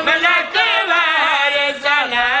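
A man's voice chanting a melodic religious recitation, a zakir's majlis verse, in long wavering held notes with short breaks for breath about half a second in and near the end.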